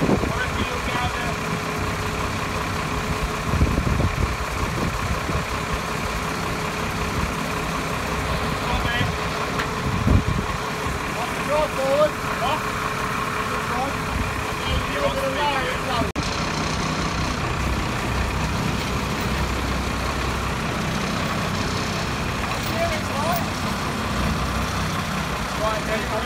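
Ward LaFrance heavy wrecker's engine idling steadily, with a dull thump about ten seconds in.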